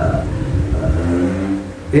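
A man's voice held on a drawn-out, steady hesitation sound ("uhh") between sentences, over a steady low background hum.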